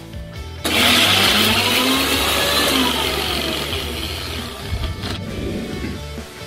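Electric mixer grinder (Indian mixie) running with its steel jar held shut, grinding wet masala into a paste. The motor starts suddenly about a second in, runs loud for about four seconds with a pitch that drifts slowly lower, and stops.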